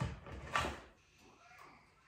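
Handling noise at a table: a light knock at the start, then a brief rustle about half a second in, as a stuffed paper squishy is handled.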